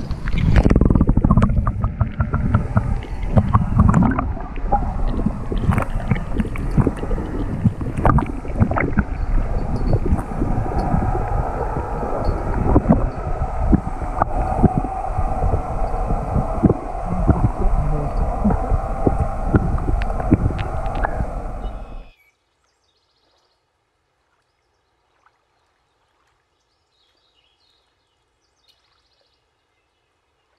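Lake water heard through a submerged action camera: a loud, muffled churning rumble with many clicks and knocks as the camera moves underwater. It cuts off suddenly about 22 seconds in, leaving silence.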